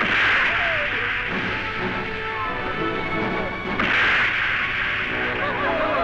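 Film fight-scene sound effects: two loud blows, one at the start and one about four seconds in, over dramatic background music.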